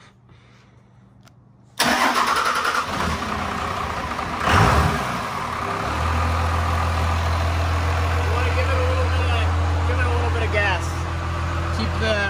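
A 12-valve Cummins 5.9-litre inline-six diesel in a Dodge Ram being started right after a fuel filter change and priming of the fuel system. It cranks for about two and a half seconds, catches with a brief rise in revs, then settles into a steady idle at about 800 rpm, a little over idle speed.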